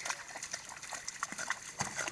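Small dog wading through shallow floodwater among grass, its legs splashing irregularly, with one heavier splash near the end.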